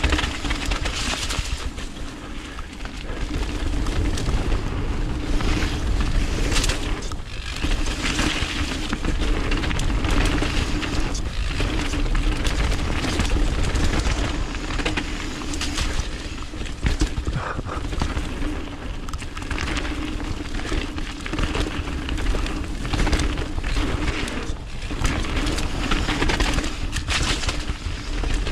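Wind buffeting the camera's microphone as a fat-tyre mountain bike rolls fast down a dirt trail, with tyre noise, rattles and knocks from the bike over bumps, and a steady low hum underneath.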